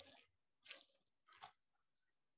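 Faint footsteps on dry leaf litter and grass, three steps at a walking pace, about two-thirds of a second apart.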